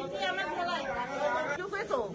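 A woman talking, with other voices chattering behind her.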